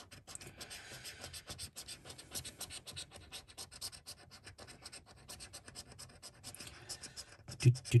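A coin scraping the scratch-off coating from a paper scratchcard in rapid, repeated short strokes.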